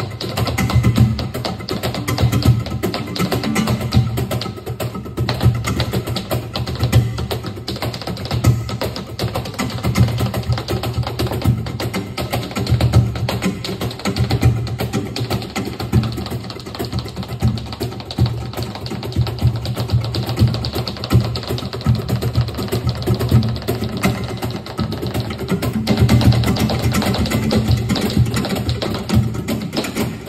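Live flamenco music with dense, rapid percussive strikes throughout.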